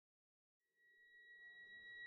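Near silence: dead quiet, then about half a second in a faint steady high tone sets in and slowly swells, the start of soft background music fading in.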